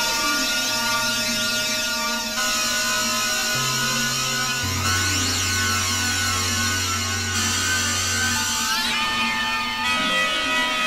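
Novation Supernova II synthesizer played live: a dense, sustained drone of many held tones over a low bass note that steps to a new pitch every second or two. Near the end, a tone glides upward.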